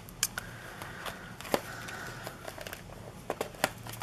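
Light handling noise of paper notebook inserts and a leather notebook cover being moved and fitted, with a few sharp clicks and taps spread through.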